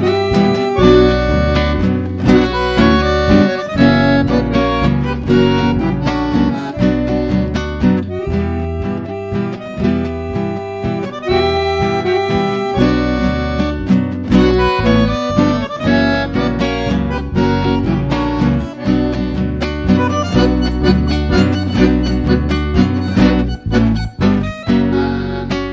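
Live bandoneon and acoustic guitar duo playing a chamamé: the bandoneon carries the melody in sustained reedy notes over plucked, strummed guitar accompaniment.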